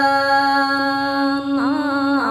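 A woman singing a Red Dao folk song, holding one long steady note, then starting a new phrase about one and a half seconds in with a wavering, sliding pitch.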